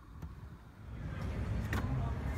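Handling rustle and a low rumble, then a sharp click near the end as a hand takes hold of a car's interior door handle.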